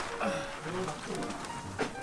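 A voice murmuring low in a pause of speech, with a single sharp click near the end.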